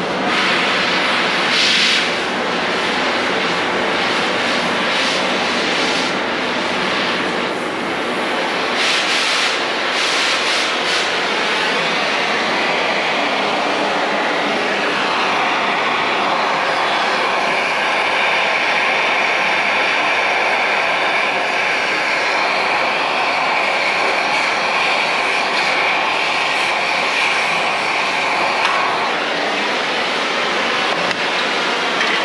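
Oxy-fuel cutting torch blowing a steady roar as it cuts the steel brake assembly off an axle hub, with crackling pops through the first ten seconds or so. About halfway in, a steady high whistle joins the roar and holds until just before the end.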